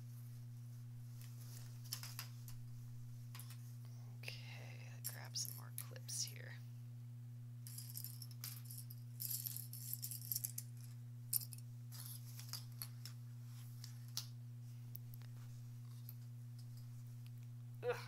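Quiet handling of cotton quilt fabric: soft rustling and small clicks of plastic sewing clips, with a sharper click about eleven seconds in. A steady low electrical hum runs underneath.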